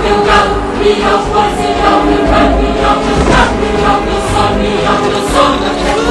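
Loud dramatic film-score music: a choir singing sustained lines over a full orchestra.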